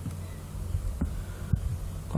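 Steady low electrical hum in the recording, with a couple of faint soft knocks about a second in and a moment later.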